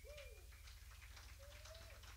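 Near silence with a low steady hum, crossed by a few faint tones that rise and fall, once early on and again near the end.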